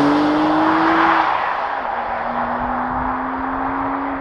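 Porsche 911 (992) Carrera S twin-turbocharged 3.0-litre flat-six accelerating away after passing close by. The engine note climbs, drops once about two seconds in at an upshift of the seven-speed manual gearbox, then climbs again as it fades into the distance.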